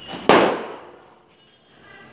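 A single sharp bang about a quarter second in, fading out over about half a second.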